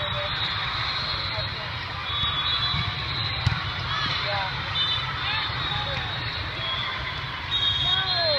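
Din of a large indoor volleyball tournament hall: many voices talking at once, with short squeaks from shoes on the court and one sharp hit about three and a half seconds in.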